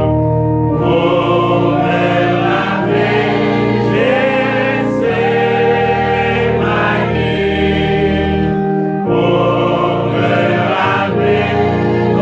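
Church choir singing a slow hymn in French, with long held notes and a short breath between phrases near the end; the singing moves from the close of the first verse into the refrain.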